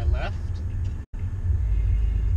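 Steady low rumble of a Bentley Bentayga's twin-turbocharged 6.0-litre W12 engine and tyres, heard inside the cabin at speed. The sound cuts out for an instant about a second in.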